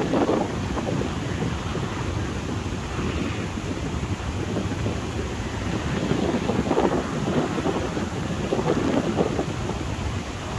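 Strong wind buffeting the microphone, a rough, rumbling rush that comes in gusts, swelling at the start and again about seven and nine seconds in.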